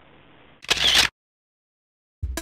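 A short camera-shutter sound effect a little over half a second in, lasting under half a second, followed by dead silence.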